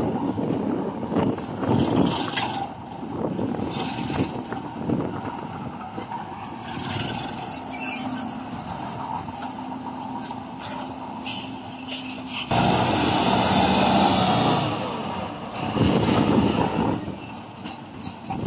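Diesel engine of an Isuzu Giga dump truck running as the truck moves into position, turning suddenly louder about twelve seconds in as the loaded body is tipped to unload.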